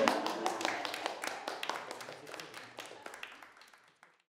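Applause from a small group of people, many quick hand claps overlapping, gradually fading out and stopping near the end.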